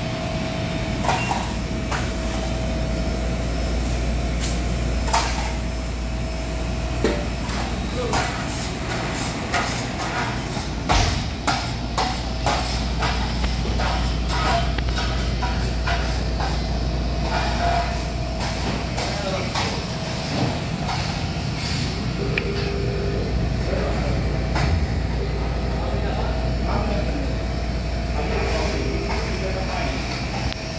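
Commercial kitchen sound: a steady low hum of ventilation with a faint steady tone. Over it come short sharp knife taps on a plastic cutting board as melon is sliced, most of them between about 8 and 14 seconds in.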